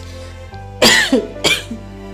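A person coughs twice, the second cough about two-thirds of a second after the first, over steady background music.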